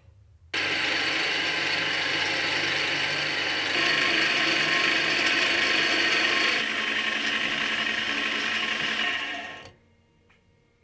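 Small metal lathe running, its gears whirring, while a twist drill in the tailstock bores into a spinning stainless steel rod. The sound starts suddenly about half a second in and fades out near the end.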